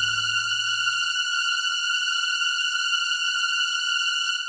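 The closing of a modern orchestral piece for piano and orchestra: a single high note held steady after the final attack, while the low end dies away about a second in.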